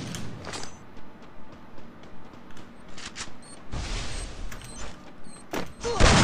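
Shooting video game sound effects: irregular clicks and knocks, with a short burst of noise about four seconds in.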